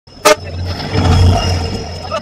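Oncoming diesel locomotive passing close alongside a moving train, its engine a deep rumble that swells about a second in and then eases as it goes by. A brief, loud pitched blast comes just at the start.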